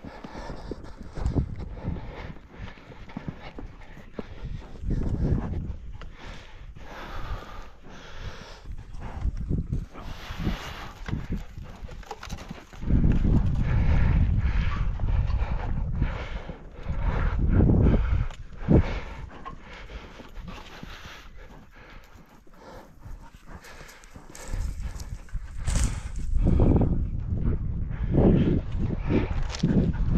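A horse walking on a sandy dirt track, its hoofbeats clip-clopping. A loud low rumble comes up about halfway through and again near the end, nearly covering the hoofbeats.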